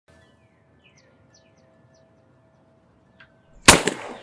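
A single sharp gunshot near the end, ringing out briefly. Before it there are only faint high chirps over soft held tones.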